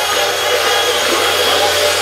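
Loud electronic dance music from a DJ set over a festival sound system, heard among the crowd, at a stretch with little bass where a dense hiss-like noise fills the mix.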